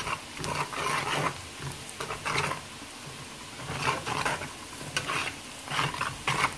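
Diced onion and celery sizzling in oil in a metal pot while a metal spoon stirs and scrapes through them, in irregular strokes roughly once a second over a steady frying hiss.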